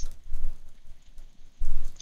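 Computer keyboard typing: a run of keystrokes with dull low thuds through the desk, loudest just before the end.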